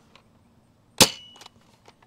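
Adventure Force Nexus Pro foam-dart blaster firing a half-length dart, a single sharp crack about a second in followed by a brief ringing tone. The shot clocks 153 feet per second on the chronograph.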